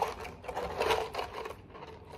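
In-shell pistachios clattering in a glass jar as a hand rummages through them, the shells clicking against each other and the glass in a rapid, irregular run that thins out near the end.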